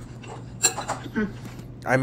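Eating from a bowl: a fork clinks sharply once about two-thirds of a second in, amid faint mumbling and a low steady hum.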